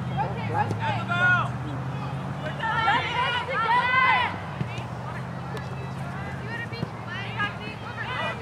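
Distant high-pitched voices of people at a girls' soccer match calling out, briefly about a second in and again around three to four seconds in, over a steady low hum.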